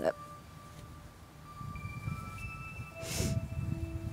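Soft background music of held, chime-like notes at several pitches. A brief rustle comes about three seconds in, with a low rumble under it.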